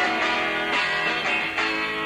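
Rock band music with strummed guitar chords between sung lines, the chords changing about twice.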